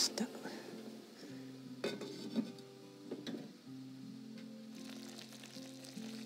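An earthenware hot pot simmering on a gas flame with a faint sizzle, and a few light clinks as its lid is handled, under soft sustained background music.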